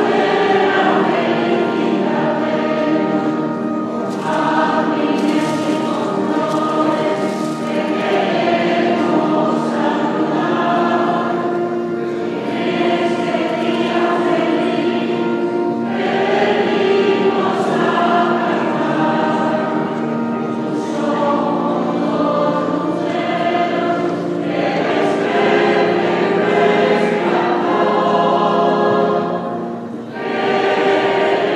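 Mixed choir of men's and women's voices singing a hymn in sustained chords, unbroken throughout.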